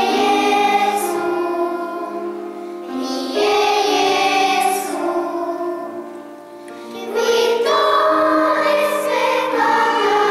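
Children's choir singing a slow melody in a church, in held phrases that swell in again about three and seven seconds in.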